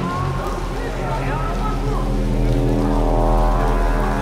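Deep synthesizer drone from a film score over a constant low rumble. A sustained chord of many tones swells in about halfway through. Under it is city street ambience with crowd voices.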